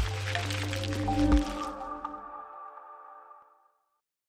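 Logo intro sting of music and sound effects: a deep bass bed with a high shimmering wash and sharp hits, the loudest a little over a second in. Ringing tones then fade away by about three and a half seconds.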